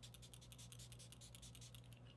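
Very faint spritzing of a Caudalie Beauty Elixir pump-spray face mist, a fine crackly hiss that fades out near the end, over a low steady hum.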